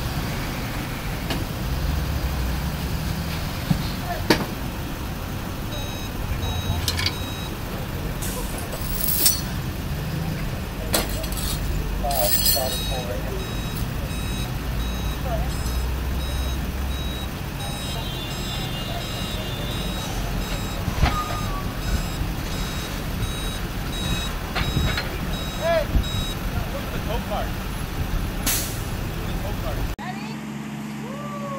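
A tow truck's engine running with its reversing alarm beeping over and over from about six seconds in until near the end, over street traffic, with a few sharp knocks along the way.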